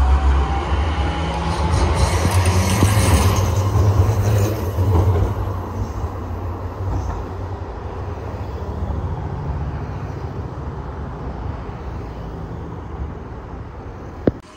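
Sheffield Supertram Siemens-Duewag tram passing close by on street-running track: a loud low rumble with a rising whine, loudest over the first five seconds, then fading as it moves away. Cars driving past on the same road follow.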